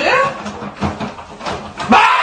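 A person's short high yelp at the start, then several quick thumps and knocks of a scuffle at an open fridge, with a high held scream just starting at the end.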